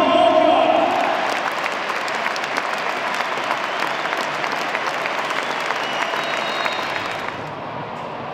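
A large stadium crowd applauding steadily, thousands of hands clapping together: a minute's applause in tribute to a former player who has died. A held tonal sound fades out in the first second, and the applause eases a little near the end.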